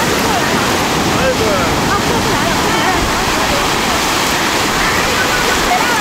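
Sea surf breaking and washing up the sand at the water's edge: a loud, steady rush of water.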